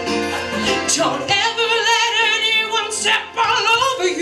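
Women singing live into microphones, with a long held note about halfway through that wavers with vibrato.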